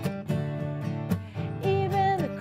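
Acoustic guitar strummed in a steady rhythm, with a woman's singing voice coming in on a held note near the end.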